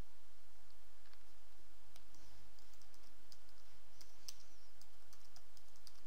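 Computer keyboard keys tapped and a mouse clicking: scattered short clicks, most of them from about two seconds in, over a steady low hum.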